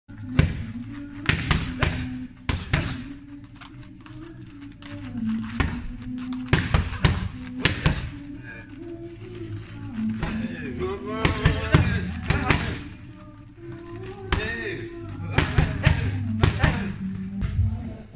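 Boxing gloves landing on pads and gloves in quick, irregular thuds, over background music with a vocal.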